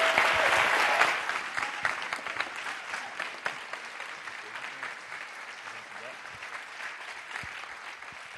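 Audience applauding. The clapping is loudest at first and gradually thins out.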